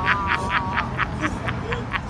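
A person laughing hard in a rapid run of short pulses, about seven a second.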